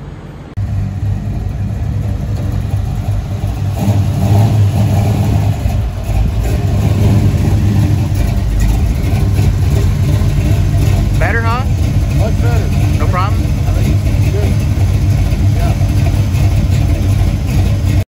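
A 1963½ Ford Galaxie's engine running steadily at idle, with its carburetor float freshly adjusted down. It comes in suddenly about half a second in and grows a little louder a few seconds later.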